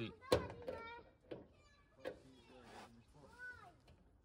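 A sharp click about a third of a second in, as a plastic trim fixing is prised with a screwdriver. It is followed by several short, high-pitched, voice-like calls in the background, the last one rising and falling.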